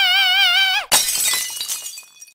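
A long held singing note with vibrato cuts off just before a second in. A glass-shattering sound effect follows at once, its crash trailing away over the next second.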